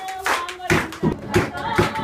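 Congregation clapping in time during praise and worship, about three claps a second, with voices singing along; the clapping turns louder and fuller a little after a third of the way in.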